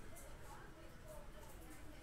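Faint talking in the background over quiet room tone.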